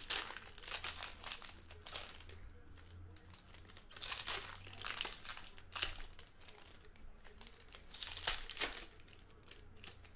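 Foil trading-card pack wrappers being torn open and crinkled by hand as the cards are pulled out. The crackle comes in several bursts a couple of seconds apart.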